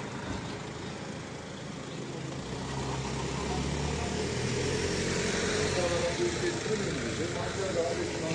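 A motor vehicle's engine running nearby on a street, its low hum growing louder from about two seconds in and easing off near the end.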